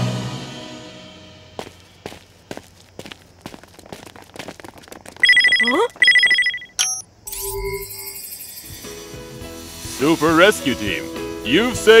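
Cartoon sound effects: scattered soft ticks, then an electronic ringtone of two short two-tone beeps for an incoming video call, followed by a short whoosh. Bright background music then starts, with a man's voice near the end.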